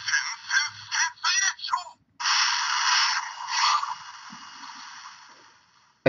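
Electronic sound chip of a Transformers Go! combiner robot playing its press-and-hold 'super sound' through the toy's small speaker, thin and tinny. First a quick string of short electronic calls, then a long rushing effect that fades out over about three seconds.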